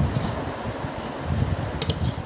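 Air from an electric fan buffeting the microphone as an uneven low rumble, with a couple of quick clicks of a metal fork against the plate near the end.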